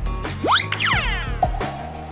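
Background music with a steady beat, with a cartoon magic sound effect laid over it: a quick rising whistle-like glide, then a cascade of falling chime tones, then a short held tone.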